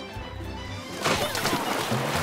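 Music playing, then about a second in a loud crash of wooden planks collapsing into a stream with splashing water, a cartoon sound effect of a badly built plank bridge falling apart.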